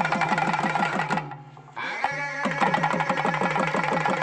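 Festival drumming: a double-headed barrel drum and a frame drum beaten in a fast, even rhythm of about five strokes a second, with a reed wind instrument holding sustained notes over them. The playing drops off briefly just after a second in, then comes back in.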